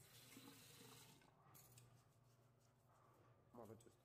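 Near silence: faint room hum with a soft scraping rustle in the first second or so, and a brief murmur of voice near the end.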